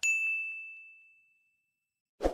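A single bright bell ding, a notification-bell sound effect, that strikes at once and rings away over about a second and a half.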